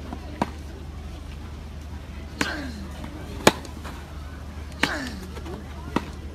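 Tennis rally on a grass court: rackets striking the ball five times, one to two seconds apart, the loudest hit a little past the middle. Two of the strokes come with a short grunt from a player that falls in pitch.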